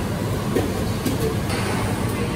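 Steady din of a busy self-service restaurant: a constant low rumble with faint, indistinct voices in the background.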